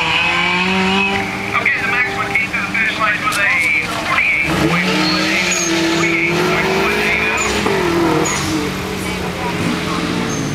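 Car on an autocross course, its engine revving up and down through the turns while the tyres squeal, the squeal strongest in the first half.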